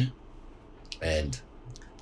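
Conversational speech: the end of one word, a pause, then a single short spoken 'and' about a second in, followed by a few faint, short clicks near the end.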